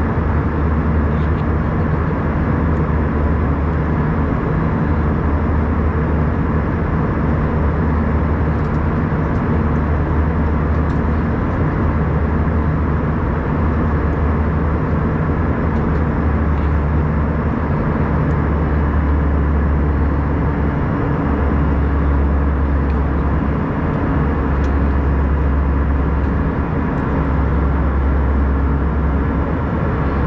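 Steady cabin noise of an Airbus A319 airliner in flight, heard from a window seat over the wing: an even rush of engine and airflow noise, heaviest in the deep low end, with a faint steady hum running under it.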